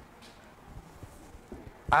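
A pause in a man's speech: low room tone with a few faint soft clicks, then his voice starts again near the end.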